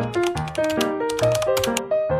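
Soft piano background music with a quick run of typewriter key clicks over it, a typing sound effect as a text caption appears.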